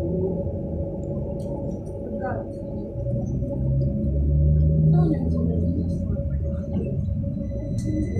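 Cabin sound of a Sinara 6254.00 trolleybus under way: the electric drive of its DTA-3U1 traction motor gives a steady whine over the low rumble of the ride. A deeper hum swells and is loudest about four to five seconds in.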